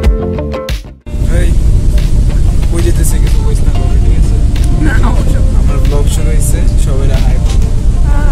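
Guitar music that cuts off about a second in, then a loud, steady low rumble inside a bus cabin, with faint voices over it.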